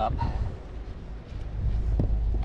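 Wind buffeting the microphone: a low rumble that eases off about a second in and swells again about half a second later.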